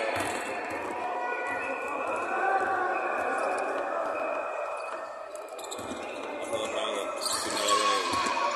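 Basketball game on a hardwood court: players' voices calling out over one another, with the basketball bouncing on the floor.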